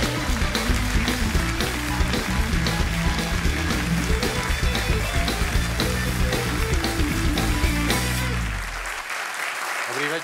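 Live house band playing the show's opening tune, with bass and drums over audience applause. The band stops about eight and a half seconds in, leaving the applause on its own.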